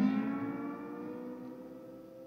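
Lap steel guitar's final chord ringing out. Its notes slide up slightly at first, then fade away steadily.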